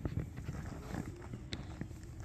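Rustling and a few scattered soft knocks as a tarp is rolled out under the edge of a tent, over a low rumble.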